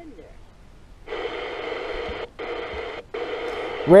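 Radio static hiss with a steady hum under it, from the small built-in speaker of a portable solar generator kit's FM radio. It comes on about a second in and cuts out briefly twice.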